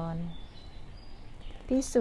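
A woman's slow, intoned recitation of a Thai Buddhist text. A long held syllable fades out, then there is a pause with faint background hiss and a brief faint high chirp, and the next word starts near the end.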